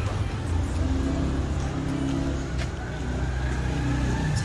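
Low, steady rumble of a road vehicle's engine running nearby, with faint music underneath.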